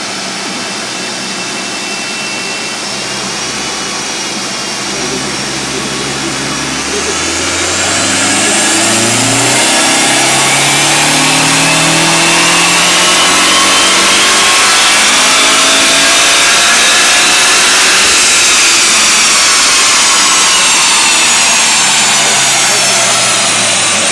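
Mitsubishi Lancer Evolution VI RS's turbocharged inline-four run on a chassis dyno. The revs climb from idle, then it runs hard at high revs for about ten seconds with a whine rising in pitch. Near the end the whine falls as it winds down.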